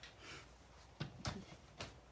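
Quiet tabletop handling sounds as a paper trimmer is brought onto a wooden table: a faint rustle, then three short knocks in the second half.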